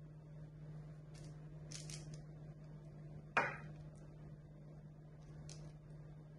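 Wooden spoon scooping soft cornmeal dough out of a glass bowl and setting it on a parchment-lined baking tray: faint scrapes and squishes, with one sharper knock about three and a half seconds in.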